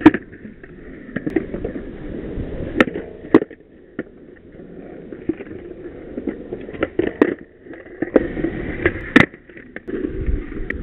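Skateboard urethane wheels rolling on a concrete skatepark, broken by sharp clacks of the board being popped and landing, several times, the loudest about nine seconds in.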